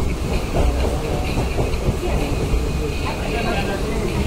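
Suburban EMU electric train running, heard from its open doorway: a steady rumble of wheels on rail with irregular clacks and a faint high hiss as it comes into a station.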